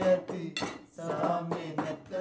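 Spoons and forks clinking against china plates and serving dishes at a meal, with people talking over it.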